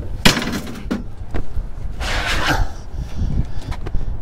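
Desktop computer tower cases being shifted and handled by hand, plastic and metal knocking together: a sharp knock just after the start, a few light clicks, then a scraping rush about two seconds in.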